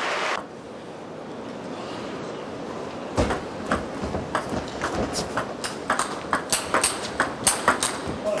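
Table tennis rally: the ball clicks sharply off rackets and table. The clicks start about three seconds in and come faster toward the end as the exchange speeds up.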